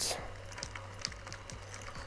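A short breath between spoken phrases, then a lull with faint scattered ticks over a low steady hum.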